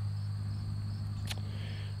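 Steady high-pitched insect chorus over a constant low hum, with a single sharp click about a second and a half in.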